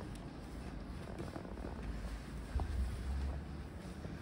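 Low rumble of microphone handling noise as the phone moves about, with a few faint light clicks.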